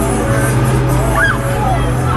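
Loud fairground ride music with a steady low bass while a Breakdance ride spins, and a brief rising-and-falling voice cutting through about a second in.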